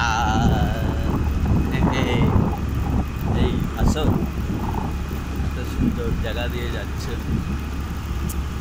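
Steady low rumble of wind on the microphone and a two-wheeler running along a road while riding, with a sung "la" at the start and a few short bits of voice.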